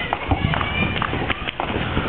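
Fireworks going off all around: many overlapping pops and bangs over steady crackling, with a short firework whistle about half a second in.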